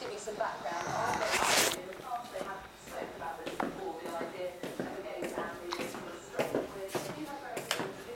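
Speech in the background, with a short rustle about one and a half seconds in and light footsteps on a tiled floor.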